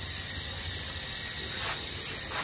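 Garden hose spraying water, a steady hiss over a low hum.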